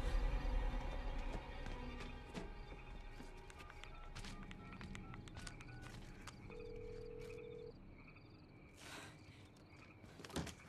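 Sparse, tense horror film score: a deep low rumble in the first second or so, fading into quiet held tones, a few short high notes and one long sustained note.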